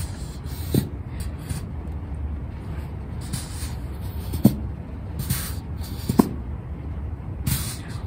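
Plastic bottle of white school glue squeezed hard, its nozzle letting out several short hisses of air with a few brief squeaks: the glue is slow to come out of the bottle.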